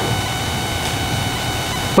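Steady background noise: an even hiss with a faint hum and a few thin, high, steady whining tones.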